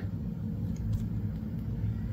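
Low, steady background rumble and hum, with a faint tick about a second in.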